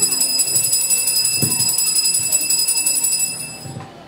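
Altar bells (a cluster of small Mass bells) shaken in a rapid, continuous jingling ring at the elevation of the consecrated host, dying away shortly before the end.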